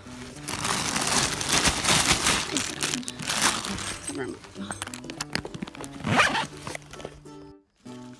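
A plastic bag of ice crinkling and rustling as a freshly caught bluegill is packed in with it in a backpack cooler. The rustling is loud for the first few seconds, with another short burst later, over background music.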